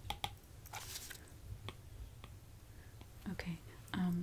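Close-miked handling of an iPad in its case: a few light, scattered clicks and taps. Soft mouth and breath sounds come between them, and a brief voiced murmur near the end.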